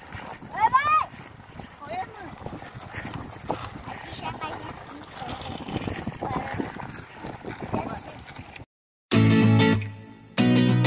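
Outdoor sounds with a short high-pitched voice call that rises and falls about a second in, and faint voices after it. Just before the end the sound cuts out, and acoustic guitar music starts loud.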